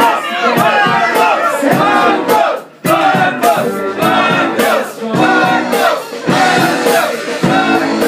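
Live rock band with bass guitar, keyboards, drums and a woman singing lead, playing through a loud club PA; the music stops for a moment about a third of the way in and then comes back in.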